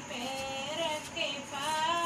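A high-pitched voice singing a Hindi dehati folk song, the melody held and wavering on long notes.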